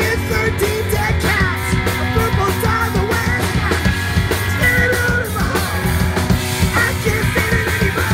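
A live punk rock band playing loud: electric guitars and drums, with a singer at the microphone.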